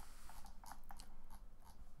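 Faint, irregular clicks from computer controls at a desk, a handful spread over two seconds.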